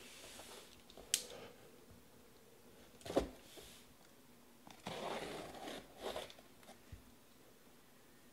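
A taped cardboard shipping case being handled and turned over by hand: a sharp tap about a second in, a thump about three seconds in, then a stretch of cardboard scraping and rubbing.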